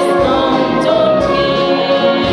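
A brass band of tubas, clarinets, flute and drums plays a song while a woman sings into a microphone.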